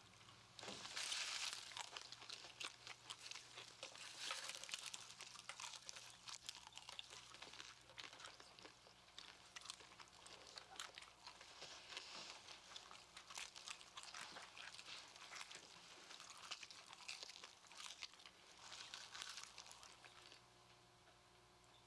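Popcorn being chewed close up: irregular crunches and crackles, starting about a second in and going on without a break.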